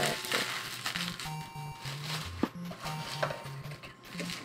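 Clear plastic bag crinkling and rustling as it is handled, with a sharp click about two and a half seconds in, over quiet background music with a repeating bass line.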